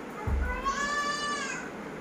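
A single high, drawn-out vocal call lasting about a second, rising slightly and falling away, just after a soft low thump.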